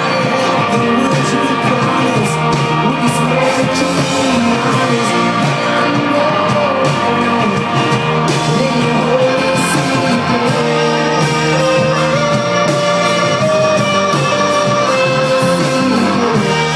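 Live rock band playing loud and steady: guitars with a singing voice.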